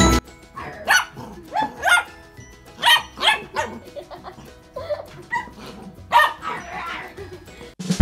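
Miniature dachshund barking, a series of short, sharp barks at irregular intervals. Music cuts off just after the start and comes back at the end.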